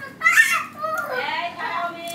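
A child's high-pitched voice talking or calling, with pitch gliding up and down.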